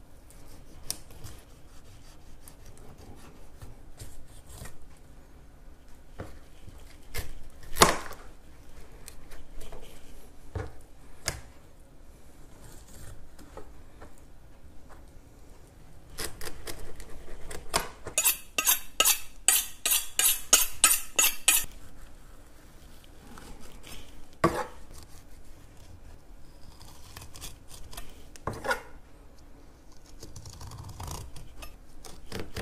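Chef's knife cutting through a small fish on a plastic cutting board: scattered knocks and scrapes of the blade on the board, with a quick run of rapid strokes about two thirds of the way through.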